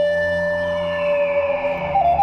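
Music: a Native American-style flute holds one long steady note over a low sustained drone. A fainter, higher tone glides slowly downward above it from about a third of the way in.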